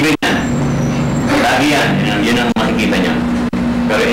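Voices talking over a steady low hum, with the sound cutting out briefly three times.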